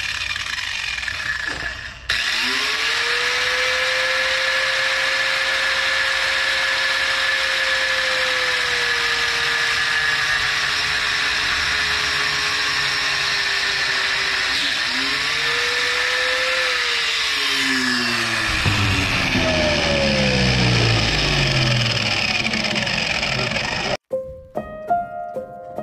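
Corded Ryobi electric grinder switched on about two seconds in and running against metal, a steady harsh hiss over the motor's whine. The motor pitch dips and comes back up about halfway through, then falls in several sweeps near the end as the tool is worked.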